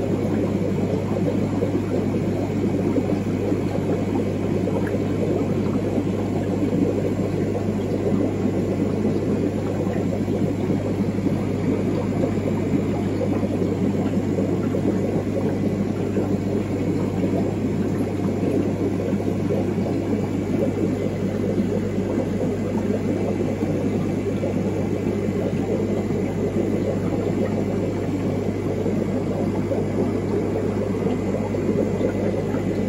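Steady low hum and rushing of aquarium equipment in a discus fish room: air pumps driving sponge filters, running continuously without change.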